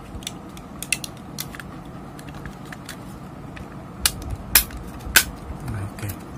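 Plastic housing and front panel of a Carel IR33 controller being pressed together by hand: a handful of sharp plastic clicks and snaps, the loudest about four and a half seconds in, with smaller rattles between.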